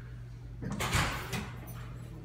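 ThyssenKrupp elevator's sliding doors starting to open, with a short burst of door noise about a second in and a smaller click after it.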